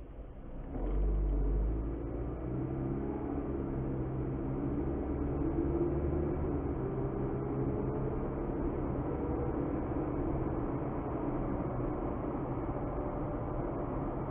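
Car engine and road noise heard inside the cabin as the car pulls away from a standstill. A low rumble comes in about a second in, the engine note rises over the next few seconds as it accelerates, then it settles to a steady cruise.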